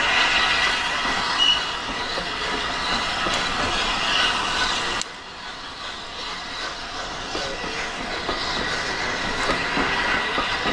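A rake of vintage teak passenger coaches rolling past close by, steel wheels running on the rails with a steady rumbling haze. The level drops sharply about halfway through as the train draws away.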